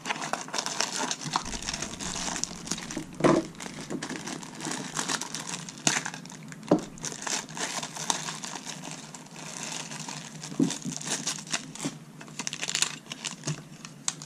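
Clear plastic packaging bag crinkling and rustling as hands unwrap a small black plastic accessory, with scattered clicks and taps throughout.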